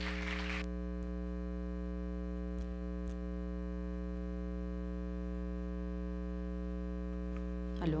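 Steady electrical mains hum from the hall's sound system, an unchanging buzz with many overtones, with two faint clicks a little past the middle.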